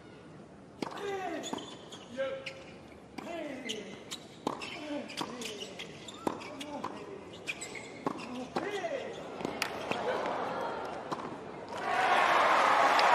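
Tennis rally on a hard court: a long run of racquet-on-ball strikes and ball bounces, mixed with sneakers squeaking on the court as the players move.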